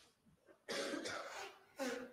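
A man coughing: a long, harsh cough about two-thirds of a second in, then a short one near the end.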